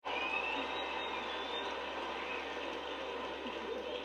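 Video projector running: a steady, even fan noise with a faint low hum that starts suddenly.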